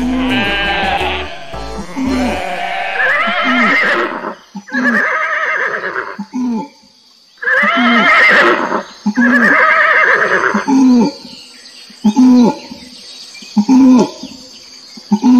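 A series of farm-animal calls, each lasting a second or two with a wavering pitch, over children's background music with a steady low beat.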